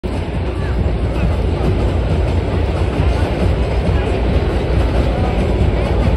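Long Island Rail Road M7 electric commuter train rolling past on an elevated bridge, a steady low rumble, with crowd chatter mixed in.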